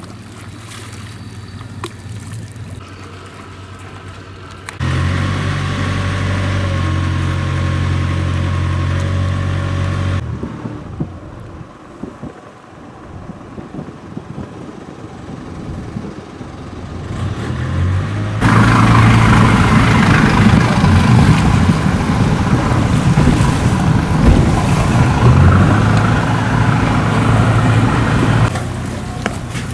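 Small wooden ferry boat's engine running. Its hum steps up about five seconds in, falls back to a quieter idle around ten seconds while the boat holds for a passing fishing boat, then builds up again and runs loudly from about eighteen seconds with water rush and wind.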